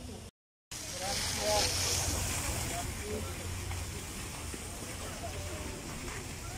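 Outdoor ambience of wind hissing and rumbling on the microphone, with faint indistinct voices of passers-by. The sound cuts out for a moment just under half a second in, then returns slightly louder.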